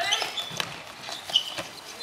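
Futsal ball being kicked and bouncing on a hard court during play: several short, sharp thuds, the loudest a little past the middle, amid players' calls.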